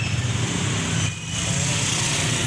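Small motorcycle engines running steadily at low speed, with a steady hiss of wind and tyres on a wet road, dipping briefly a little over a second in.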